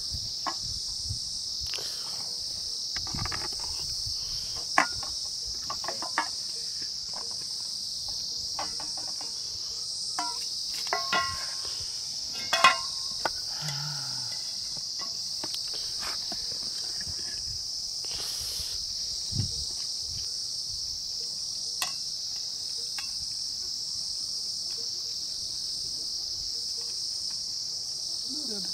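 A steady high-pitched insect chorus, with scattered clinks and knocks of metal pots and plates being handled, thickest near the middle.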